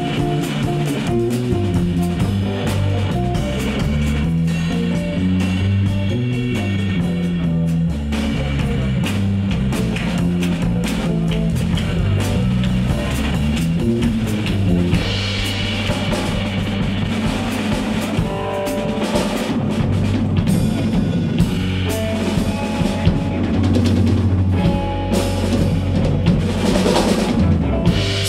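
Live band playing an instrumental passage: drum kit keeping a steady beat under a bass line, with electric guitar and violin.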